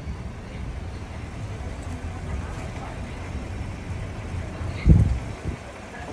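Low, steady rumble of idling vehicles, with one sharp thump about five seconds in.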